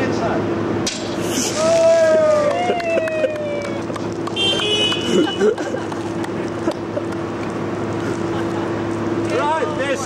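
Steady engine drone of the crane lowering the steel schooner's hull into the water. Over it a voice calls out about two seconds in and again near the end, and a short high-pitched sound comes about four seconds in.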